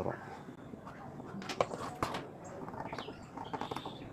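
Tailor's scissors and cloth being handled on a cutting table, with soft rustling and a couple of sharp clicks about one and a half to two seconds in, as the blades start cutting the blouse fabric.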